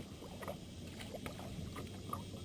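Faint sloshing of water at a fishing boat's side, with a few light knocks and taps on the boat.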